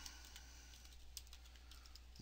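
Faint computer keyboard typing: several quick keystrokes over a steady low electrical hum.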